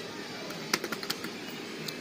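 Fruit machine clicking: a quick run of sharp clicks about halfway through and one more near the end, over a steady arcade background din.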